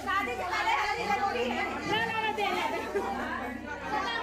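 Several people talking over one another: lively, overlapping chatter of a small crowd in a room.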